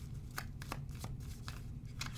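Tarot deck being shuffled by hand: a string of short, soft card clicks and slides, several a second.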